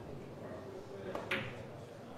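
A cue tip striking a pool cue ball, then a sharper click of ball on ball, two clicks in quick succession about a second in, the second louder, over quiet hall room tone.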